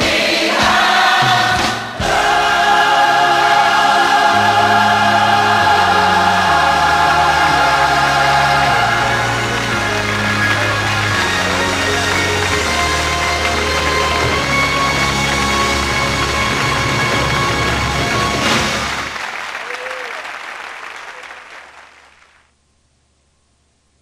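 Gospel choir singing long held chords with band accompaniment, over a bass line that steps slowly from note to note. The music dies away over the last few seconds.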